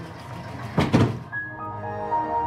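Film soundtrack sound effects over background music: two quick thuds, then a descending electronic chime, the Windows log-off sound, used as the spaceship's explosion.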